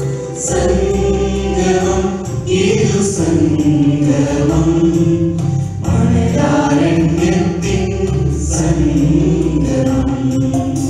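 Mixed church choir of women, girls and men singing a Malayalam theme song in long held phrases, with a musical backing.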